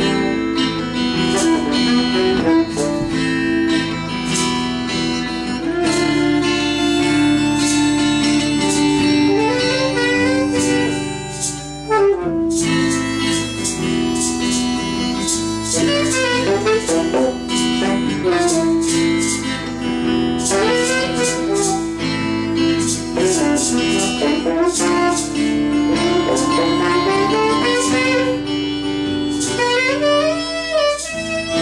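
Improvised melancholic instrumental jam: acoustic guitar strumming under tenor saxophone and harmonica playing held notes and gliding melody lines, with a brief lull about twelve seconds in.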